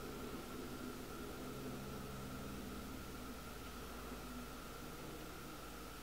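Faint steady hiss with a low hum: room tone and recording noise. Some of the hum fades out about halfway through.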